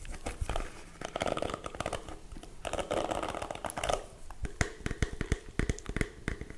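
Plastic hairbrush bristles brushed close to the microphone: two stretches of dense crackly scratching, then a scatter of separate taps and clicks.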